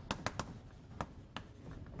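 Chalk writing on a blackboard: a quick, irregular run of short, faint taps and scrapes as a word is handwritten.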